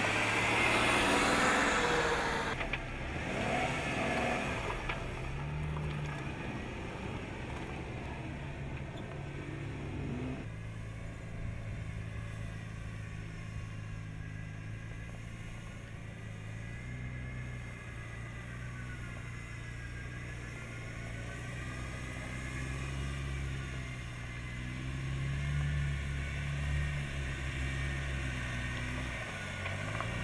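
A Jeep concept's engine running at low speed as it crawls over a rough trail and slickrock, its note swelling and easing several times as the throttle is worked. A louder rush of noise covers the first couple of seconds.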